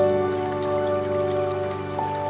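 Slow, calm piano music: a single note hangs and slowly fades over low steady sustained tones, with no new note struck. A soft patter like rain or trickling water sits faintly underneath.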